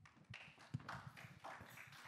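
Faint, irregular footsteps and light knocks, with a little rustling.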